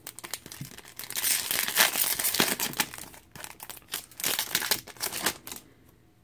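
Foil trading-card pack crinkling as it is torn open and the cards are pulled out: a run of sharp crackling rustles with a short break about three seconds in, stopping shortly before the end.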